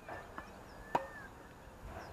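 A tennis ball impact: one sharp pop about a second in, with a fainter knock before it.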